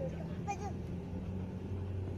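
Vehicle engine running steadily at low speed, heard from inside the cab, with a short voice-like sound about half a second in.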